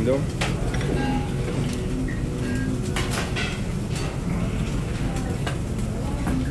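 Steady low rumble of kitchen background noise, with faint voices in the background and a few short sharp clicks.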